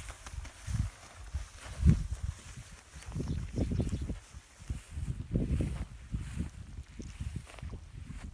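Footsteps through tall grass, heard as irregular low thuds with some rustling, the loudest about two seconds in.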